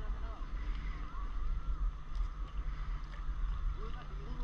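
Steady low wind rumble on the microphone out on open water, with faint, indistinct voices now and then.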